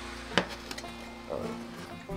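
One sharp metal clink about half a second in, from a stainless saucepan being lifted off the stove top, over a steady low hum.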